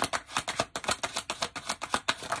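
A deck of tarot cards being shuffled by hand: a quick, even run of crisp card-edge clicks, about eight or nine a second.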